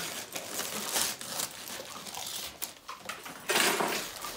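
Wrapping paper rustling and crinkling in irregular bursts as a present is unwrapped, with a louder burst of crumpling near the end.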